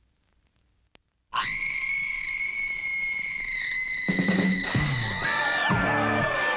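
A woman's long, high scream, held at one pitch for about four seconds, starting suddenly about a second in. Heavy drum beats and music come in under it about four seconds in.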